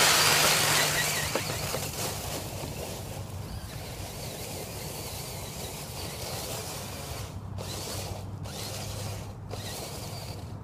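RC car pulling away through dry fallen leaves, its motor whine and the rustle of leaves under its wheels fading over the first two seconds. A steady faint outdoor hiss with a low hum follows.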